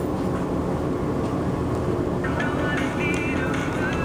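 Steady low rumbling background noise, with faint music coming in about halfway through.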